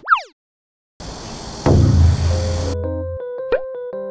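A quick falling whistle-like swoosh effect, then about a second of silence. Then comes a stretch of background noise with a strong low hum, followed by a light, plucky synthesizer jingle with a quick rising boing near the end.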